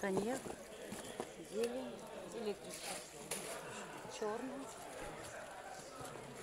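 Quiet background voices of people talking, with a few short clicks and rustles as leather handbags and their plastic wrapping are handled.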